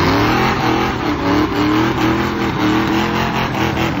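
Fox-body Ford Mustang 5.0 V8 revved hard and held at high revs, the pitch wavering up and down over a loud hiss, as it spins a rear tire in a burnout. Only one rear tire spins (a one-tire fire), which the owner puts down to the rear end that he plans to redo with his suspension.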